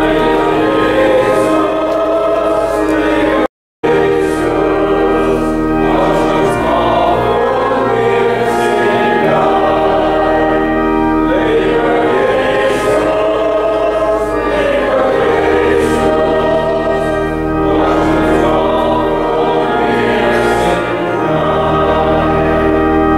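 A congregation singing a hymn in Pennsylvania Dutch over organ accompaniment, the organ's held notes steady under the voices. The sound cuts out completely for a moment about three and a half seconds in.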